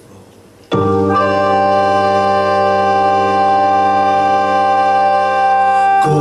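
Electronic keyboard with an organ sound starting a loud chord just under a second in and holding it steady, with no drums or rhythm.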